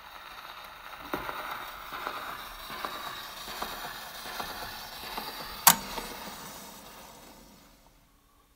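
Acoustic gramophone's needle running in the run-out groove of a 78 rpm shellac record after the music has ended: surface hiss with a soft click once per turn of the disc, about every three-quarters of a second. One sharp, louder click comes late on, then the noise fades away.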